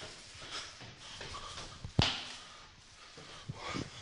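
A man breathing hard as he climbs stairs, out of breath from the climb, with footsteps and a sharp knock about halfway through.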